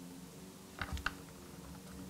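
Small clicks from handling a miniature replica camera and the metal clip of its strap, with two sharp clicks close together about a second in.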